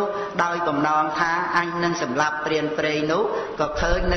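A man's voice chanting a melodic recitation, holding long notes that glide up and down in pitch.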